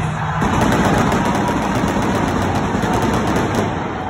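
Stadium stage pyrotechnics going off in a rapid crackling volley that lasts about three seconds and stops shortly before the end, taking over from the arena music.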